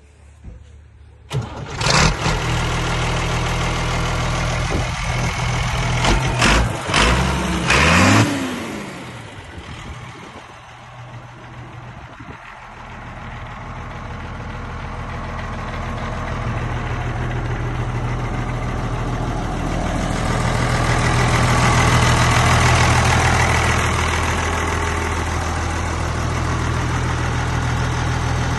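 1982 Ford 8210 tractor's six-cylinder diesel engine starting about two seconds in, surging up and down a few times, then settling into a steady idle that grows louder toward the end.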